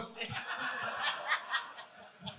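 Several people laughing and chuckling, scattered and subdued.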